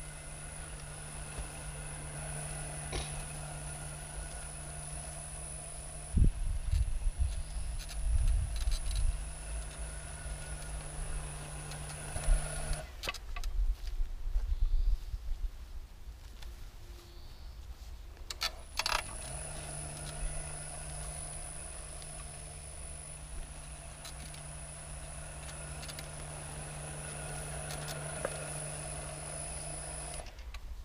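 Electric Krot motor cultivator, its motor fed by a frequency converter, running steadily while pulling a plow through soil, with a low hum and a high steady whine; bouts of low rumbling knocks come between about 6 and 12 seconds in. The motor stops a little before halfway and starts again with a click about six seconds later.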